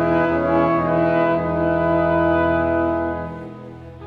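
Brass quintet and orchestra playing held brass chords, which die away over the last second.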